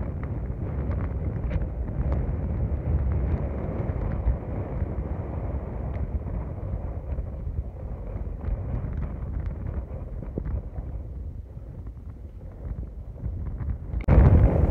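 Wind buffeting the phone's microphone: a heavy, gusty low rumble with no speech over it, easing a little near the end.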